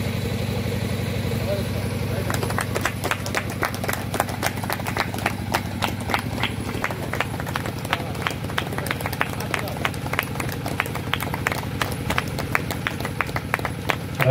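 Scattered hand clapping from a small audience, starting about two seconds in and carrying on as medals are presented, over a steady low hum.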